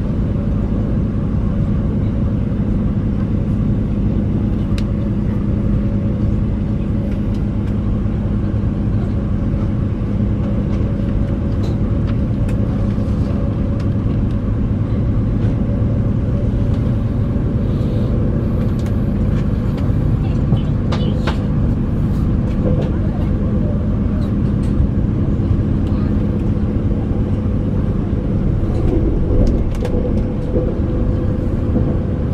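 Passenger train running at speed, heard from inside the carriage: a steady, loud rumble of wheels on rail with a constant low hum under it, and a few faint clicks about two-thirds of the way through.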